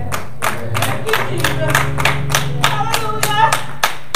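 Hands clapping in a steady beat, about three claps a second, over music with a held low chord and voices.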